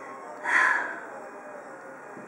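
A person's short sigh: one breath out of about half a second, starting about half a second in.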